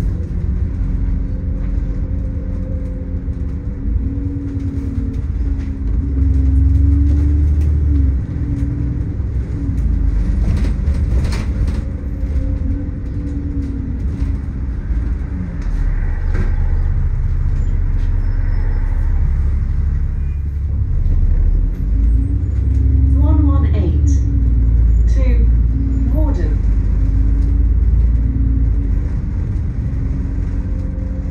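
Double-decker bus heard from inside while moving: a low rumble of engine, drivetrain and road, the engine's pitch rising and falling as the bus pulls away and slows. Short rising whines cut in about three-quarters of the way through.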